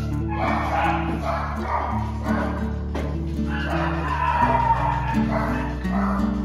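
Background music with steady held notes, over two puppies play-fighting and barking in short bursts.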